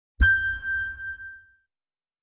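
Logo sting sound effect: a single bright ding struck with a low thud under it, ringing on one high tone and dying away within about a second and a half.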